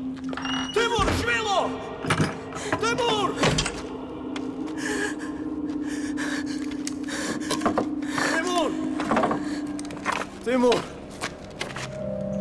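Short, strained vocal cries and groans from men, mixed with a few dull thuds, over a low held tone of film score.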